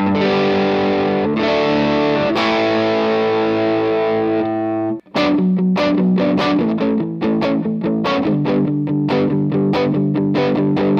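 Music Man electric guitar overdriven through a Wampler Tumnus (a Klon-clone overdrive) with its gain turned up, into an AC-style amp, giving a crunchy tone. A few chords are strummed and left ringing, choked off at about five seconds, then followed by a run of short, rhythmic chord strokes.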